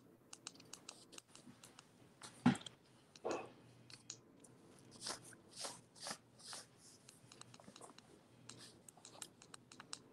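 Scattered faint clicks and short rustles of handling noise, with one sharper knock about two and a half seconds in, over quiet room tone.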